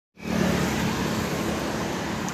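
Road traffic noise: a motor vehicle passing close by, a steady rush with a low engine hum that fades within the first second.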